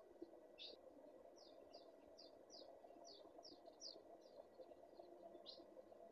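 Faint bird chirps: a run of short, high notes, each sliding downward, two or three a second, over a steady low hum.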